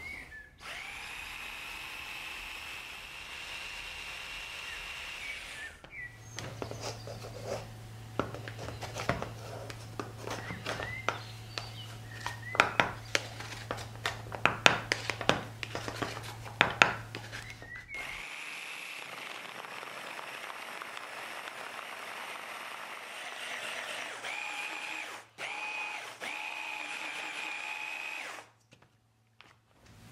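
Electric mini food processor (chopper) running steadily with a high whine, cutting butter into flour and cocoa for cookie dough. It runs for about five seconds; then comes a stretch of light clicks and taps as butter pieces are scraped into the plastic bowl; then the motor runs again for about ten seconds near the end.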